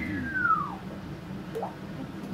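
A whistle-like sound from a storyteller's mouth, falling steadily in pitch for almost a second, imitating someone falling through the air. A short rising blip follows about a second and a half in.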